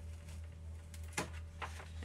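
Tape being peeled off a sheet of paper: quiet paper handling with two brief crackles around the middle, over a steady low hum.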